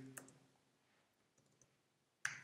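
Near silence with a few faint clicks of computer keyboard keystrokes: a sharp one just after the start, then fainter ones later.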